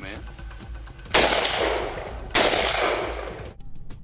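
Two shots from an AR-15-style rifle, about a second and a quarter apart. Each is sudden and loud and trails off in a long echo.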